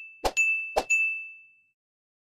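End-screen sound effects for an animated subscribe button: two short clicks, each followed at once by a bright notification-bell ding. The second ding rings out and fades away by about a second and a half in.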